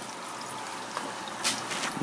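Water trickling and dribbling into an aquarium as a fish bag is emptied, with a short sharp splash about one and a half seconds in.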